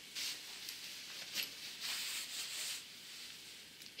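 Fabric rustling in several short hissy bursts as a plaid cotton shirt is pulled on over a top.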